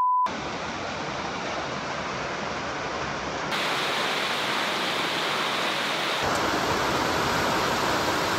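A short electronic beep, then heavy tropical rain pouring down steadily on the rainforest at night. The sound of the rain shifts slightly at two cuts.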